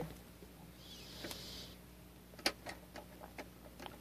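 Glass dip pen being dipped into a bottle of fountain pen ink: a few faint, sharp clicks of glass on glass, with a short soft hiss about a second in, over a faint steady hum.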